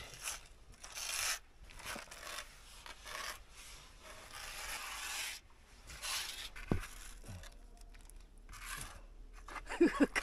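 A small hand scraper spreading sealing paste on a plastered wall: a string of short scraping strokes, with one sharp knock about two-thirds of the way through.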